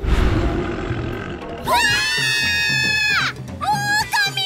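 A loud, rough roar from the coelacanth puppet as it rears up, followed a little under two seconds in by a long, high-pitched cry held at a steady pitch for about a second and a half.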